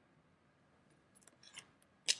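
Near silence, with a few faint, crisp clicks of tarot cards being handled in the last half second.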